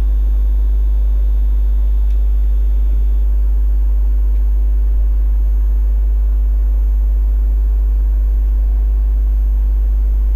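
Loud, steady low electrical hum with a few faint higher overtones, unchanging throughout: mains hum carried on the recording's audio.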